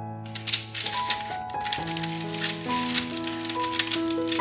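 A wooden spatula scraping and crinkling against parchment paper on a baking sheet as it is pushed under a baked pastry, in a run of irregular rasping strokes starting just after the beginning, over background music with long held notes.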